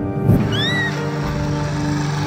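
A small, blinded kitten crying, one high meow that rises and falls about half a second in, over steady background music. A short whoosh comes just before it.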